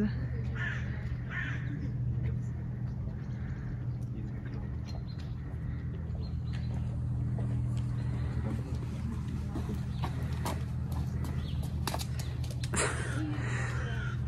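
Pet stroller's wheels rolling along an asphalt road, a steady low rumble, with scattered light clicks from the wheels and footsteps. A brief louder sound comes near the end.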